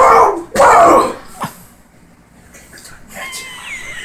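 A man letting out two loud, strained wordless yells in the first second, then a single sharp knock about a second and a half in. A faint, high, wavering whine follows near the end.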